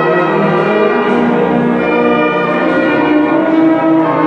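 Brass band playing full, sustained chords that change every second or so, with the sound carrying in the reverberant hall.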